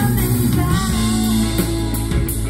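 Live band playing a pop-rock song: a woman sings over electric bass guitar, keyboard and drum kit, with the drums hitting a steady beat.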